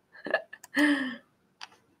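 A woman's short, breathy laugh, with a few faint clicks around it.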